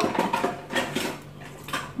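Tableware clinking: several light, irregular clicks and knocks of utensils and ceramic dishes on a table, over a faint steady low hum.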